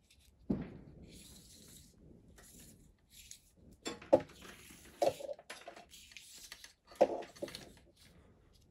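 Small objects handled on a workbench: a few separate knocks and clatters, the sharpest about half a second, four, five and seven seconds in, with faint rustling between.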